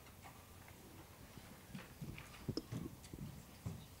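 Faint room noise in a lull, with scattered soft knocks and a few sharp clicks at irregular intervals.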